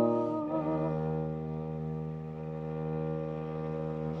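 A soprano's held note with vibrato dies away about a second in. A viola da gamba then holds a long, steady bowed low note on its own.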